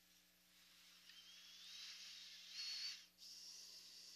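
Near silence with a faint hiss that swells, carrying a thin whistling tone that rises in pitch, and both cut off abruptly about three seconds in.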